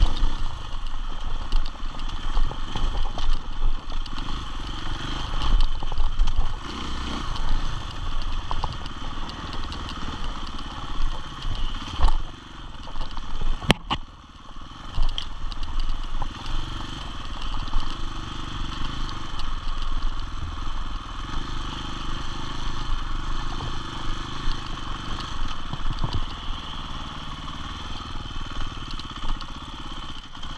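KTM enduro motorcycle engine running under a rising and falling throttle on a rough dirt trail, with the clatter of the bike over the ground and one sharp knock about halfway through. It runs lower and steadier in the second half.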